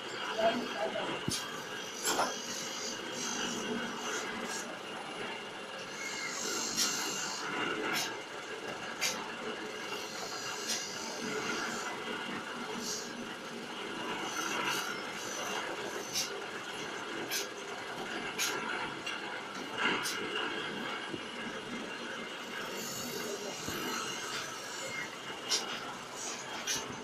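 Automatic bottle filling machine running: a steady mechanical hum from the conveyor and drive, with sharp clicks every second or two and repeated short bursts of high hiss from its air-driven parts.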